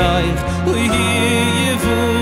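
Male vocalist singing a slow, emotional Jewish wedding melody into a microphone over a live band, with steady sustained bass notes changing about every second.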